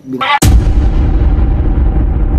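A sudden loud boom about half a second in, followed by a sustained deep rumble that holds steady while its higher part fades away, like an edited explosion or impact sound effect.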